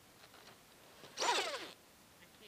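Electric RC buggy's motor and drivetrain whirring in one short throttle burst, about a second in, falling in pitch as it lets off, while the buggy is stuck nosed against another car in the snow.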